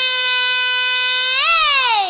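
A singer's voice holding one long high vowel in a Tamil Ayyappan devotional chant, the pitch steady for about a second and a half, then lifting briefly and sliding down near the end.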